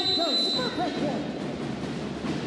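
Referee's whistle blown in one long, steady blast that cuts off under a second in, marking the end of the rally and the set, over the shouts of celebrating players.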